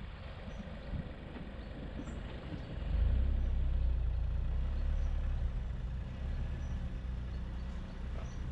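A car's engine and tyres at low speed, a low rumble that grows louder about three seconds in as the car picks up speed.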